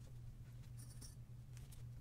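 Faint rustle and small clicks of folded fabric squares being handled and set onto a foam ornament form, with a short scratchy rustle about a second in, over a low steady hum.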